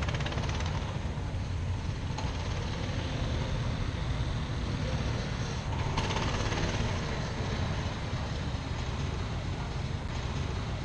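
Wind rumbling on the microphone over the faint, distant sound of a racing kart engine running on the circuit, which rises briefly about six seconds in.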